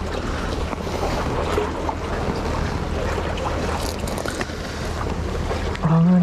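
Steady wind buffeting the microphone over the wash of sea surf against the tetrapods, a constant rushing noise with a low rumble beneath it.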